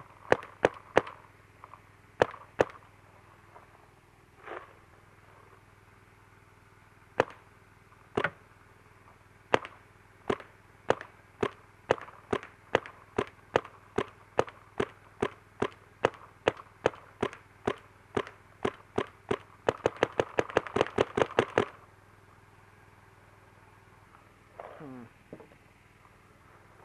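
Electronic paintball markers, a Dye M2 and a Planet Eclipse CS1, firing: scattered single shots at first, then a steady string of about two to three shots a second, then a rapid string of about nine shots a second near the end.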